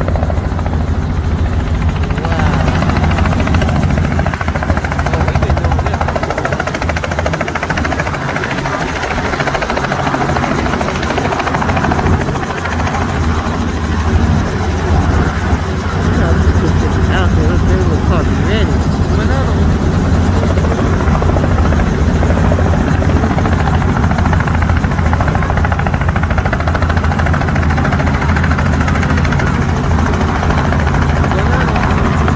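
Small helicopter running on the ground close by, a steady loud rotor and engine drone that holds without a break.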